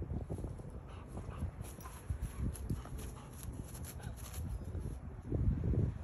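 Soft, irregular rustling and footfalls in grass and dry leaves as a dog moves about, getting louder near the end.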